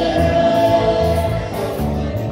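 Live gospel praise band rehearsing: a choir sings a long held note over electric bass and keyboard, with the bass notes moving underneath.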